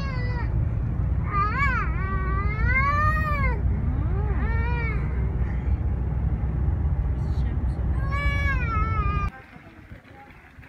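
Steady low road rumble inside a car cabin at highway speed, with several high rising-and-falling vocal wails over it. The rumble cuts off suddenly about nine seconds in.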